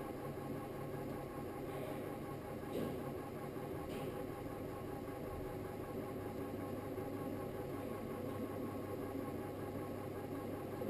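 Electric potter's wheel motor running with a steady hum as the clay pot spins under the potter's hands.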